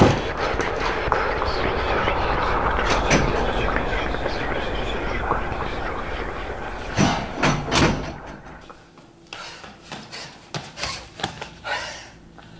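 A scramble to flee in the dark. A sharp bang opens it, followed by a long loud rush of hurried movement and jostling. About seven seconds in come three loud bangs, and then short breathy puffs of panting.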